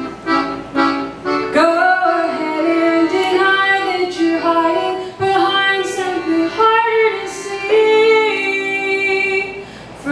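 A woman singing to her own piano accordion accompaniment. Short, evenly spaced accordion chords in the first second or so, then long sung phrases over held accordion chords.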